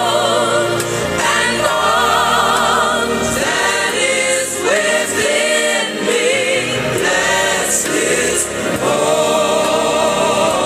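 Gospel music: a choir singing held notes with vibrato over instrumental backing.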